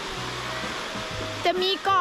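Small sea waves breaking and washing onto the beach, a steady rush of surf, with a woman's voice starting near the end.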